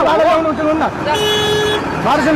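A woman's raised voice arguing, then a vehicle horn sounds one steady honk of well under a second, a little past the middle.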